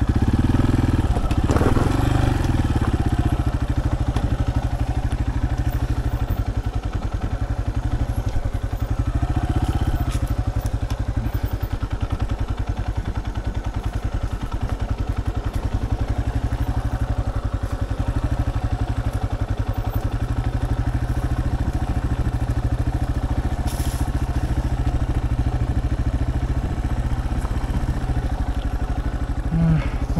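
Yamaha Serow 250's air-cooled single-cylinder four-stroke engine running at low, steady revs as the trail bike is ridden, with brief rises in revs about two and ten seconds in and a single knock near the start.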